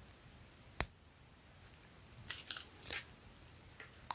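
A single sharp click about a second in, then faint scattered rustles and ticks from hands handling a cloth tape measure and T-shirt fabric.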